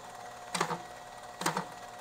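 Automated vial labeling line with a chain conveyor running: a faint steady motor hum under short mechanical clacks, one about every second, as vials move through the machine.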